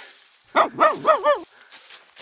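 A voice giving four quick, high calls in a row, each rising and falling in pitch, about four a second.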